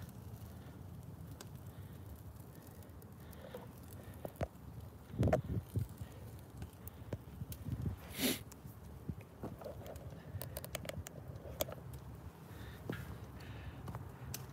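Faint crackling of a wood and cardboard fire burning in a steel-drum burn barrel, scattered small ticks with a couple of louder knocks about five and eight seconds in.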